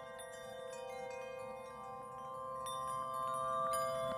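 Chime-like music: layered, sustained bell tones that swell slowly and ease off near the end.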